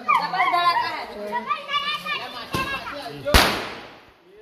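A firecracker goes off on the ground with one loud bang about three-quarters of the way in, its noise trailing away, with a smaller crack a moment before it. Before the bang, children are shouting excitedly.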